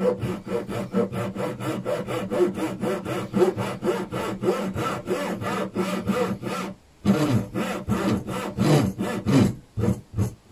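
Japanese backsaw crosscutting a small hardwood block held in a vise, with rapid, even saw strokes. The strokes break off briefly about seven seconds in, then resume.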